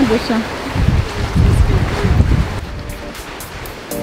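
Wind buffeting the microphone in gusts over the wash of sea surf, with the last of a voice at the very start. Music comes in during the last second or so.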